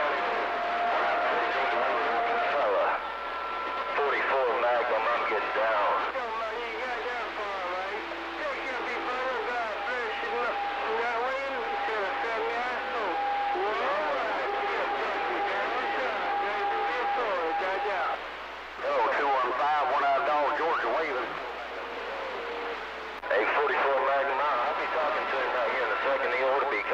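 CB radio receiver playing distant stations: distorted, hard-to-make-out voices with steady whistling tones at several pitches running under them, the signal dipping briefly a few times.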